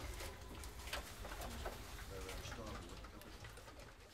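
Faint low voices murmuring, with scattered sharp clicks and knocks.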